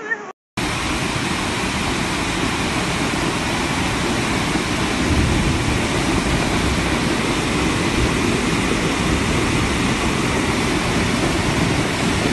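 A torrent of muddy floodwater rushing down a street, a loud, steady rush of water that starts about half a second in after a brief dropout.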